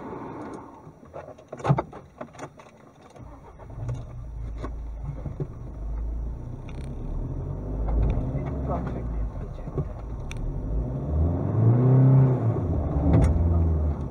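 A car engine pulling away on a rough dirt track, with a few sharp knocks early on. The engine's low rumble builds, and near the end the revs rise and fall as it pulls harder.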